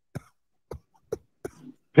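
A man's voice in short breathy bursts, about four in quick succession with gaps between, quieter than the talk around them.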